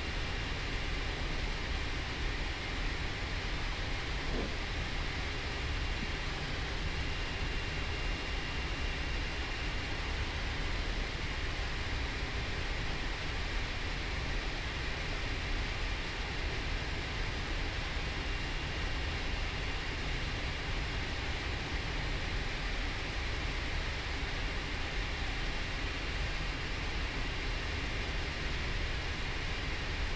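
Steady, even hiss of an Airbus A340-300 flight deck's ambient noise while the aircraft taxis slowly onto its stand: cockpit air-conditioning airflow and engine noise, unchanging throughout.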